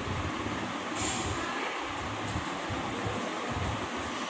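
A pen writing on a workbook page, the light scratching over a steady hiss of room noise.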